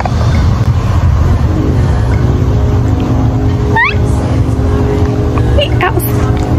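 A motor vehicle's engine running steadily nearby: a loud low rumble with a steady hum over it. A short rising squeak sounds about four seconds in.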